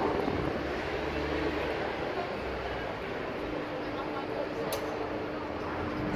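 Steady background hum and murmur of a busy cruise terminal walkway beside a docked cruise ship, with a faint steady tone in it and one short click about three-quarters through.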